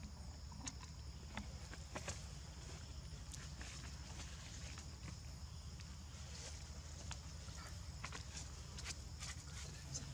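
Faint steady high-pitched insect drone on two close pitches over a low rumble, with scattered small clicks and taps.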